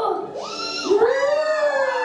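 Several high voices, most likely children's, in long, drawn-out wavering cries that glide up and down in pitch, with a short high shriek about half a second in.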